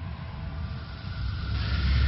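Intro sound effect: a deep, steady rumble. About one and a half seconds in, a rushing whoosh swells over it and grows louder.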